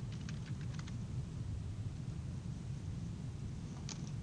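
Computer keyboard keys tapped in a quick run of clicks during the first second, with one more click near the end, over a steady low room hum.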